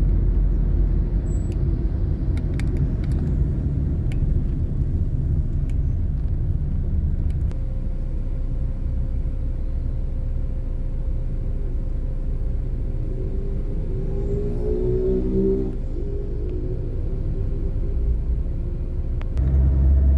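Steady low road and engine rumble inside a moving car. About three quarters of the way through, a faint pitched hum wavers briefly.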